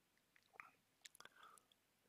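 Near silence with a few faint, short mouth clicks.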